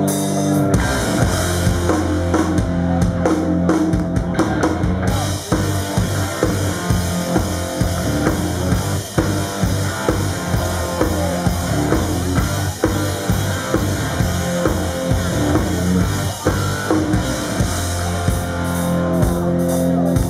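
Live hard rock band playing an instrumental passage: electric guitar and bass chords over a full drum kit. A held chord rings at first, and the drums come in with a steady driving beat just under a second in.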